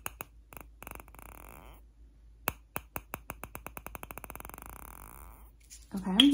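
Close-miked handheld trigger object sounded for a mock hearing test: a few single sharp taps, then a run of hard clicks that come faster and faster for about three seconds and stop suddenly.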